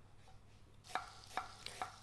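A few light knife strikes on a wooden cutting board, about four in the second half, as an onion is sliced; before them it is nearly silent.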